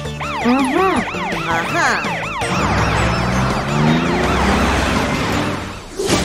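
Cartoon police truck siren sound effect: a fast rising-and-falling wail, about three sweeps a second. About halfway through, a rushing noise with a low rising drone joins in as the siren fades back.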